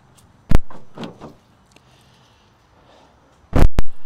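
A pickup truck door shut with a single bang that fades out. About three seconds later come two loud bangs close together, as the Chevrolet Colorado's tailgate is dropped open.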